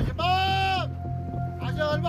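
Soundtrack music with a singing voice holding one long note that rises and falls, then a shorter sung phrase near the end, over a steady low drone.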